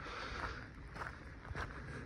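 Faint footsteps of a person walking, about two steps a second, over low outdoor background noise.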